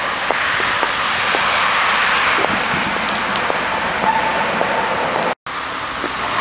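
Road traffic on a city street: the steady noise of passing cars' tyres and engines, swelling as a car goes by about two seconds in. The sound cuts out abruptly for a moment near the end.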